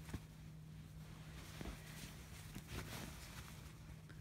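Faint rustling and a few soft taps of bedding and fabric as a small dog is moved about on a bed, over a steady low hum.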